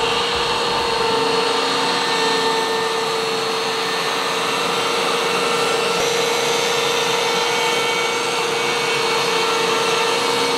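Wood-Mizer MB200 Slabmizer slab flattener running its cutter head across a eucalyptus slab, with the dust collection system drawing air through the hose. A steady hum with a held whine sits over an even rush of noise.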